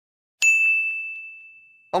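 A single high, bell-like ding that strikes suddenly and rings out, fading away over about a second and a half.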